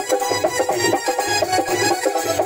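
Instrumental passage of Indian folk music: a harmonium plays held reed notes over a steady drum beat of about four strokes a second, with the metal jingle of hand-held wooden clappers.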